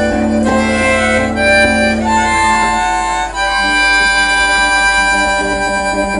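Live band with harmonica over acoustic and electric guitars playing the close of a song, the notes settling into a long held chord in the second half.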